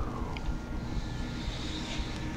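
A low, steady rumble with faint sustained tones.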